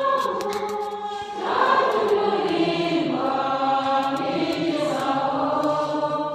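A hymn sung slowly by a group of voices, long notes held and sliding from one pitch to the next, with a short dip about a second in before the singing swells again.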